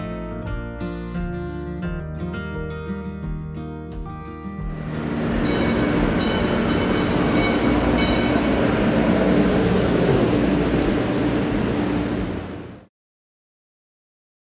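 Guitar background music. About five seconds in, it gives way to the loud running noise of an MBTA Green Line Type 7 light-rail train pulling into an underground station, with a steady low hum and brief high-pitched squeals. It cuts off abruptly near the end.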